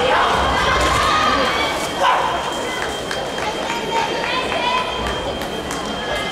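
Busy sports-hall ambience: many voices calling and shouting at once, with a thin steady high-pitched tone coming in about halfway through.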